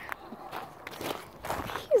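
Footsteps of people walking on a dirt path: several soft steps.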